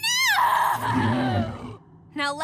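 Cartoon villains crying out as they are hit by a magic blast: a woman's high scream that falls in pitch, then a lower man's groan under a rushing noise, dying away near the end.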